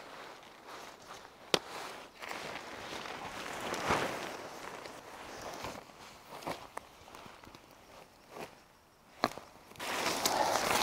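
Tent fabric rustling and being handled while a tunnel tent is pitched, with steps in the grass and sharp clicks, the loudest about one and a half seconds in and again near the end.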